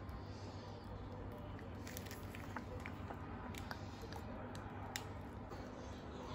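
Soft squishing and a few faint light clicks as a piping bag is squeezed to pipe mousse into small plastic cups, over a steady low hum.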